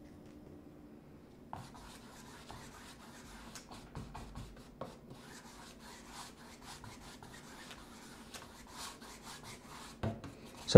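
Paintbrush scrubbing acrylic paint onto a canvas: faint dry rubbing strokes with small ticks, starting about a second and a half in.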